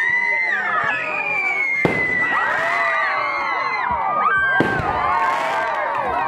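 Fireworks rockets whistling as they climb, many shrill whistles gliding over one another, with two sharp bangs of bursts, about two seconds in and just before five seconds.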